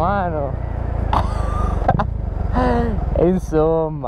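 A Husqvarna 401 motorcycle's single-cylinder engine running steadily at low speed, heard from the bike, under a man's sing-song vocalizing that rises and falls in pitch several times.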